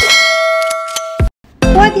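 A bell-like notification chime sound effect rings out with several steady tones and cuts off suddenly after about a second. After a brief gap, an upbeat background tune with a plucked melody and a steady low beat starts near the end.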